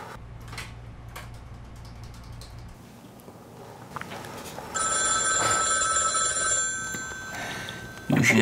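A telephone ringing: one ring of about two seconds, starting a little past halfway. Before it there is quiet room tone with a few faint clicks.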